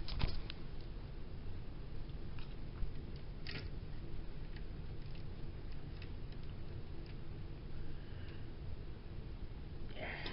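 Faint handling sounds of a sheer curtain and window blind being moved by hand: a few soft clicks and a brief rustle about three and a half seconds in, over a steady low rumble.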